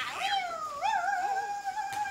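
A baby's high-pitched vocalizing: a short falling cry, then a long, slightly wavering squeal held on one pitch.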